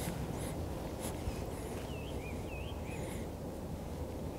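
Birds calling: a few short high chirps and, in the middle, some wavering whistled notes, over a steady low outdoor rumble.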